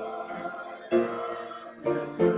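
Choral music: a choir singing slow, sustained chords, with a new chord entering about a second in and another near the end.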